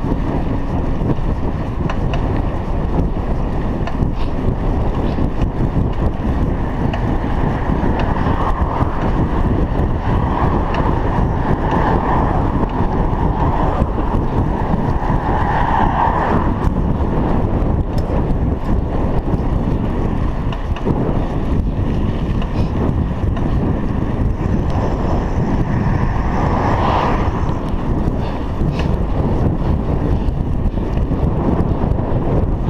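Wind rushing over the microphone of a chest-mounted GoPro Hero 3 on a moving bicycle: a steady, loud roar of wind noise with a few brief swells.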